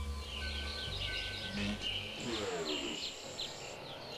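Birds chirping in a dense chorus of short high calls, with a long steady high tone through the middle; a low music drone fades out under them in the first two seconds.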